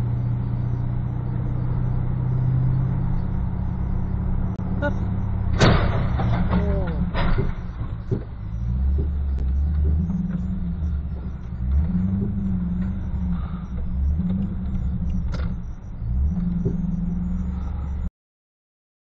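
Car engine and road rumble heard from inside the cabin while the car rolls slowly, with a few sharp knocks, the loudest about six seconds in.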